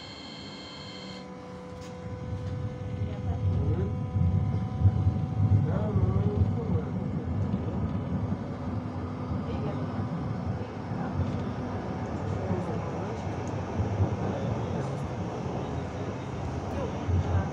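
Interior sound of a Hanover TW 6000 tram pulling away and running along the track. A low rumble of wheels and running gear swells about two seconds in, with a steady motor tone under it. A set of steady high tones stops about a second in.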